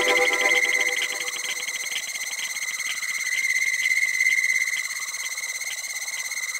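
Breakdown in a tech house track: the kick drum and bass drop out, leaving a steady high synth tone over a fast ticking that thins out over the first few seconds.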